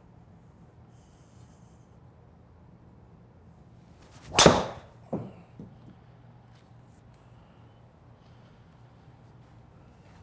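A golf driver swung at full speed: a brief whoosh ending in a loud crack as the clubhead strikes the ball and the ball hits the simulator screen, followed by two smaller knocks less than a second later. The golfer calls this shot a mis-hit, off the middle of the face.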